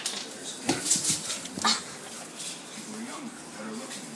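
Soft, wavering whimpering sounds, with a few sharp knocks and rubs from the phone being handled in the first two seconds.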